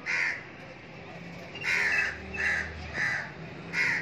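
Crows cawing: about five short harsh caws, one right at the start and four more in quick succession over the last two and a half seconds.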